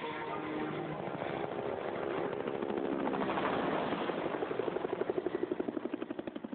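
Helicopter rotor running. It grows louder, and in the second half its blade chop comes through as a fast, even beat.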